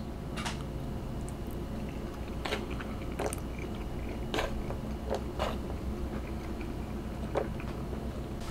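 A man chewing a mouthful of noodles, with a few soft mouth clicks spaced a second or more apart.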